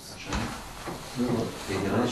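A soft knock about a third of a second in, then a person talking faintly.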